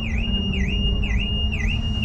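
A car alarm sounding: a high electronic tone that swoops down and back up about twice a second, over a low rumble of background noise.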